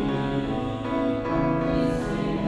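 Instrumental accompaniment of a worship song in a short gap between sung lines, sustained keyboard chords that change twice.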